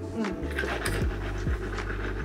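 Whitening mouthwash being swished around inside closed cheeks, a soft wet sloshing and breathing through the nose, over background music with a soft steady beat.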